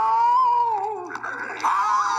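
A cartoon character's voice in one long, drawn-out cry that rises and then falls in pitch, dying away about a second in. Near the end, other cartoon speech starts. It is heard as played through a TV and recorded off the screen.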